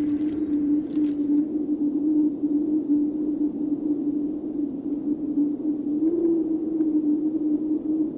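A steady droning hum held on one low pitch, with a slight upward wobble in pitch about six seconds in, over a faint hiss.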